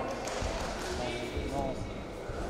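Indoor arena ambience during a grappling bout: voices calling out around the mat, mixed with dull, low thuds.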